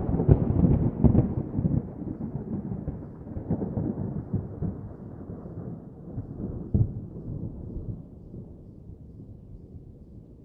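A low, dull rumble with irregular heavier swells, loudest in the first couple of seconds and then fading away gradually.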